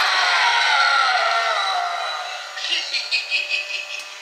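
Jack Straw animatronic scarecrow prop playing its sound effect through its built-in speaker as it is triggered: a loud, harsh sound with pitch sliding downward that fades over the first two seconds, then a quick pulsing sound of about five beats a second near the end.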